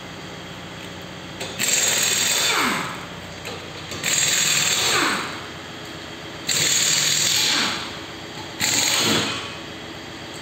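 Pneumatic workshop tool run in four bursts of about a second each, every burst with a falling whine.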